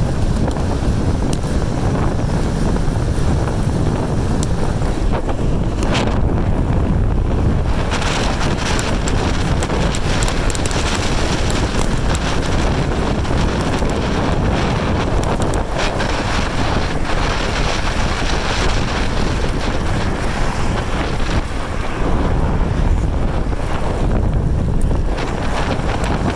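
Loud, steady wind rush buffeting the microphone of a handheld camera on a bicycle descending a hill at speed.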